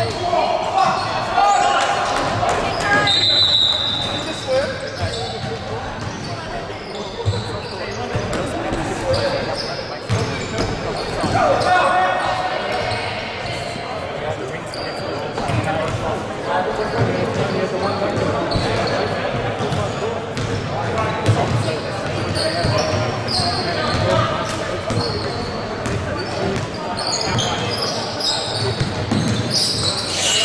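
Basketball game sounds in a large gymnasium: a ball bouncing on the wooden court, with players' and spectators' voices echoing through the hall. A short high tone sounds about three seconds in.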